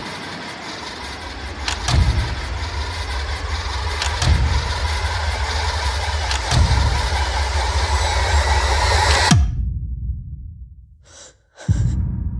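Dense horror-trailer sound design: a loud low rumble and wash of noise, punctuated by heavy hits about every two and a half seconds, swelling until it cuts off abruptly about nine seconds in, then dying away.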